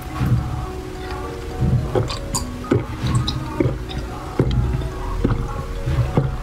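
A person gulping a thick jelly drink from a small glass bottle, with swallows close to the microphone about once a second, over steady background music.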